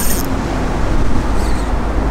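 Road traffic on a nearby road: a steady low rumble with a wash of tyre noise.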